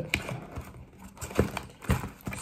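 A cardboard product box being handled and opened, with three light knocks as the box and the plastic timers inside bump against each other and the table: one near the start and two close together near the end.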